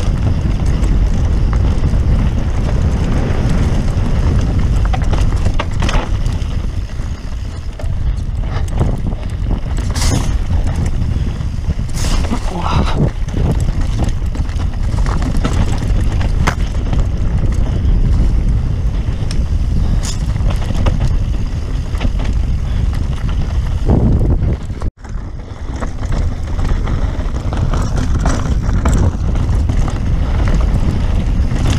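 Mountain bike descending a loose dirt trail, heard from a camera riding on the bike: steady wind rumble on the microphone with many short knocks and rattles as it runs over rough ground. The sound cuts out for a moment about 25 seconds in.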